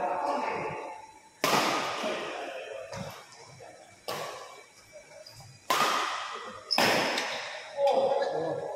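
Badminton rackets striking a shuttlecock in a fast rally: five sharp hits spaced one to three seconds apart, each ringing briefly in the hall.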